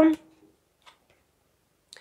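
A woman's voice trails off, then near silence with a faint click about a second in and a soft rustle near the end, as oracle cards are handled and fanned out.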